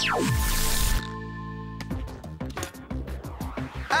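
Cartoon zap sound effect of a power disc being transmitted: a quick downward pitch sweep with a hiss right at the start, lasting under a second. Background score follows, with held notes and then quick percussive hits.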